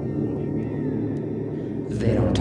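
A low, steady rumble, with a faint tone falling in pitch about a second in.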